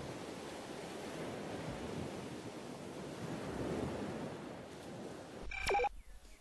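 Sea ambience: a steady rush of waves and wind that swells and eases slowly. Just before the end comes a short, bright ringing tone with a falling sweep.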